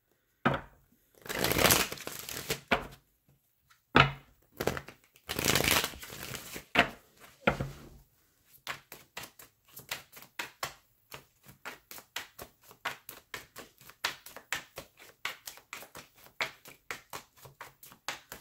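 A deck of tarot cards being shuffled by hand. There are several longer swishes of the cards in the first few seconds, then a long, even run of quick, light card taps at about four a second.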